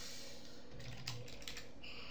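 Faint computer keyboard typing: a few scattered keystrokes.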